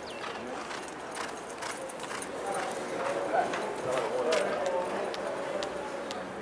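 Hoofbeats of a racehorse galloping on a dirt track, an uneven run of dull thuds. Indistinct voices come in over it in the middle.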